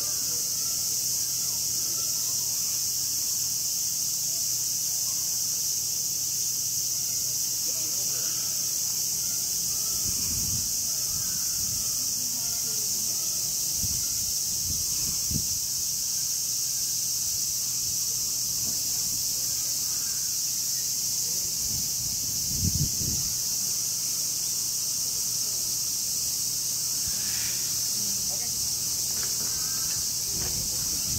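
A chorus of cicadas shrilling steadily and high throughout, with a few soft low thuds around the middle.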